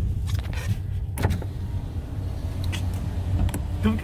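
A car's power window motor lowering the side window, over the low, steady hum of the car's idling engine, with a few light clicks.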